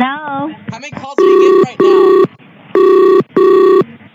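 Telephone ringing tone from a computer dialer as a call rings through: two double rings, each a pair of short, steady, buzzy beeps. A snatch of phone-line voice comes just before the first ring.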